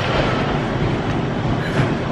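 Stationary exercise bike being pedalled: a steady mechanical rumble from the machine, fairly loud and even.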